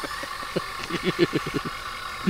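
A man laughing in a quick run of short pulses through the middle, over a steady high hum.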